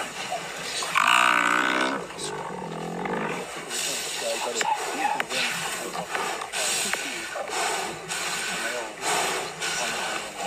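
Lions growling as they attack and feed on a downed Cape buffalo, with a loud, drawn-out call about a second in.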